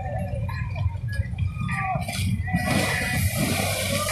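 A person coming off a water slide and splashing into the pool: a loud rush of water about two and a half seconds in, lasting under two seconds, over a steady low rumble.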